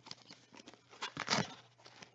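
Paper trading-card pack being handled: soft paper rustling and crinkling with small clicks, loudest a little past a second in.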